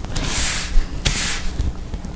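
Hands rubbing and smoothing a sheet of tissue paper flat on a cutting mat, giving two short rustling swishes: the first just after the start, the second about a second in.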